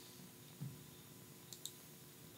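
Two quick computer-mouse clicks about one and a half seconds in, over faint room tone.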